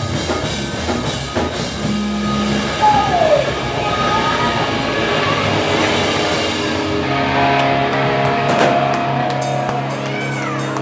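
Rock band playing live, heard from the audience: distorted electric guitars over bass and drum kit in an instrumental passage, with a guitar note bending down in pitch about three seconds in and long held notes in the second half.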